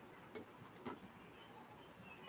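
Near silence: room tone with two faint, sharp clicks, the first about a third of a second in and the second just under a second in.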